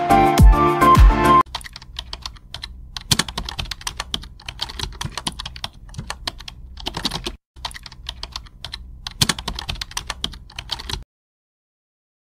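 Music ends about a second and a half in, then comes a computer keyboard typing sound effect: irregular key clicks in quick runs with short pauses, stopping about a second before the end.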